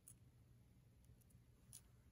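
Near silence with a few faint, short clicks of sewing scissors making a tiny snip in folded fabric.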